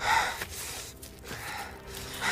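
A man's sharp, pained gasp, loudest right at the start, then quieter breathing.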